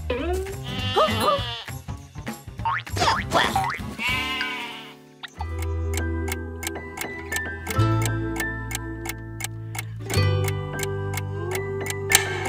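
Cartoon music with a wordless character voice wavering up and down in the first few seconds. From about five seconds in, an alarm clock ticks steadily, about three ticks a second, over the music.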